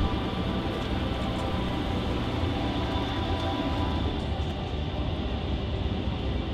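Engine of a small trackless tourist road train running in a low, steady rumble as it drives slowly past, with music faintly behind it.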